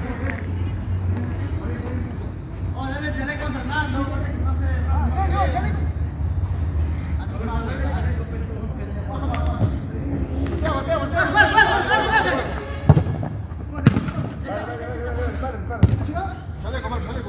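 Players' voices calling across a football pitch over a steady low hum, with a few sharp knocks of the ball being kicked in the last few seconds.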